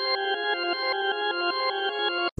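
A high, bell-like synth melody from a Serum bell preset, pitched up an octave and played back reversed: overlapping sustained notes that change every fraction of a second. It sounds too high for the producer's taste.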